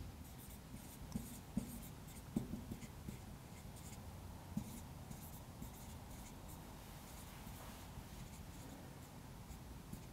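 Whiteboard marker writing on a whiteboard, faint, in short strokes with a few light taps in the first half.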